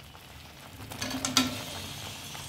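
Fried paneer cubes tipped from a steel strainer into a kadhai of hot masala: a few quick metal clinks and knocks about a second in, over a faint sizzle from the pan.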